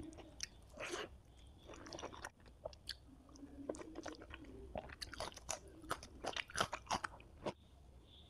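A person chewing food close to the microphone, with crisp crunches and sharp mouth clicks that come thickest in the second half.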